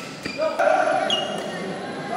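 Badminton rally: sharp clicks of rackets hitting the shuttlecock and thudding footfalls, with court shoes squeaking on the court mat, one long squeak from about half a second in.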